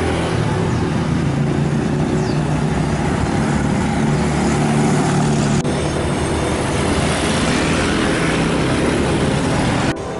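Road traffic, with motorcycle and car engines running along the road, loud and steady. There is an abrupt break a little past halfway, then similar traffic noise carries on.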